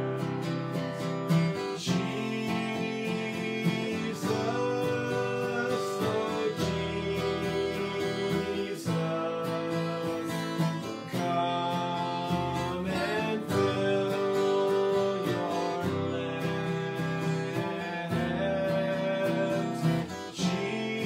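A man singing a slow worship chorus while strumming a steel-string acoustic guitar.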